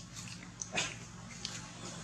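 Baby long-tailed macaque giving a few brief, faint high-pitched squeaks while it tugs at its mother to nurse, the clearest one just before a second in.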